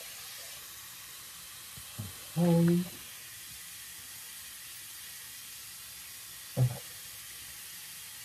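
Steady hiss of a tap running into a bathroom sink. A short hummed vocal sound comes about two and a half seconds in, and a brief one near seven seconds.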